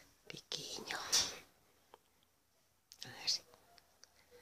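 A person whispering softly: two short whispered phrases, one about half a second in and one about three seconds in, with a few faint clicks.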